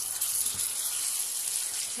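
Chicken simmering in a watery masala gravy in a pan, sizzling with a steady hiss while a silicone spoon stirs it.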